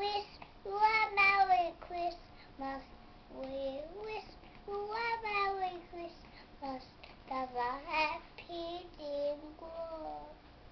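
A small girl singing alone, without accompaniment, in a string of short held notes that slide up and down, with brief breaths between phrases.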